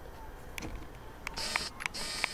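Camera handling noise as the camera is picked up and moved: rubbing on the microphone with a few sharp clicks, starting about halfway through.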